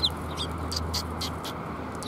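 Eurasian tree sparrows giving short, high chirps, about five of them spread through two seconds.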